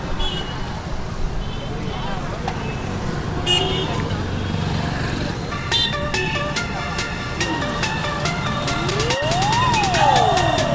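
Busy road traffic: vehicles passing with short horn toots. From about six seconds in, background music comes in with an even ticking beat, and near the end a sweeping tone rises and falls.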